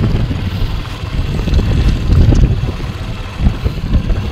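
Wind buffeting the microphone: a loud, uneven low rumble that swells a little past the middle.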